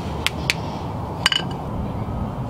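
Light metallic clicks, two close together at the start and a short ringing clink just past halfway, over a steady low background hum.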